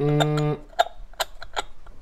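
A drawn-out vocal hesitation for about half a second, then a handful of light, sharp metallic clicks and taps as a small metal hub cap is tried on a wheel hub.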